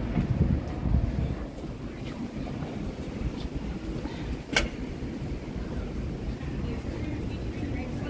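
City street traffic: a steady low rumble of vehicles, with one sharp click about four and a half seconds in.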